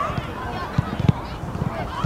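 Several high voices of players and spectators shouting and calling over one another during a football match, with two sharp thumps about a second in.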